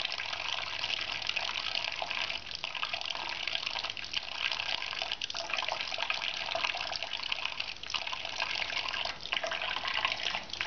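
Kitchen mixer tap running a thin stream into a stainless steel sink of soapy dishwater: a steady rush of falling water with small irregular flickers.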